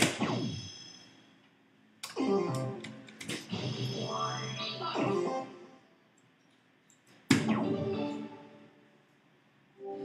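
DARTSLIVE electronic dartboard machine playing its electronic sound effects when soft-tip darts land: three sudden hits, at the start, about 2 s in and about 7 s in, each followed by ringing electronic tones. The hit about 2 s in leads into a longer jingle lasting a few seconds.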